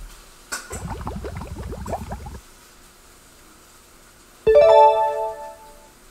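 Quiz-show sound effects: a quick flurry of rising tones for about a second and a half, then, about four and a half seconds in, a loud bright chime chord that rings and fades. The chime marks the reveal of the poll results.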